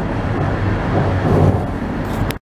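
Steady road and engine noise of a car at highway speed, heard from inside the cabin.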